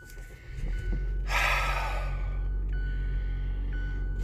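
2017 Mazda 6's 2.5-litre four-cylinder engine starting: it catches about a second in with a brief rush of noise, then settles into a steady idle.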